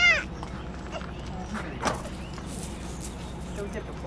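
A toddler's short, high whiny cry right at the start, then a low background with a single click about two seconds in.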